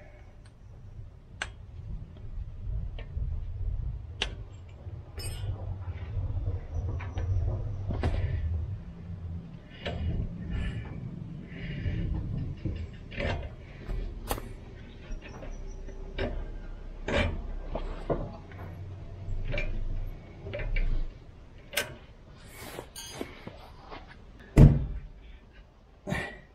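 Brake pads being worked out of a Toyota Land Cruiser 200 Series front brake caliper by hand: scattered metal clicks, taps and scrapes, with one heavy thump near the end.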